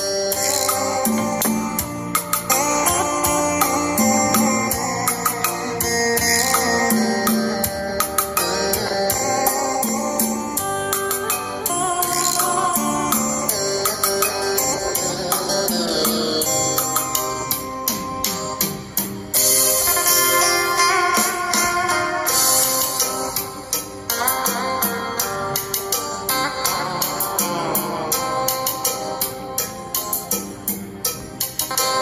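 Guitar-led music played over a two-way speaker test rig: Pioneer P8802 titanium-dome tweeters and 20 cm woofers driven through an AB-502 passive crossover, heard in the room.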